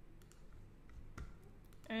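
A handful of faint, scattered clicks from a computer mouse and keyboard, with one slightly louder click just past the middle.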